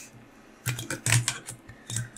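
A quick, irregular run of light clicks and ticks, starting a little way in, from the bobbin holder and thread being worked around the hook at a fly-tying vise as the thread is tied in.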